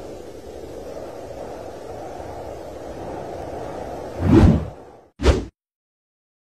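Sound-design whooshes: a steady low rushing noise, then a loud swelling whoosh a little after four seconds in and a second short, sharp whoosh just after five seconds, after which the sound cuts out.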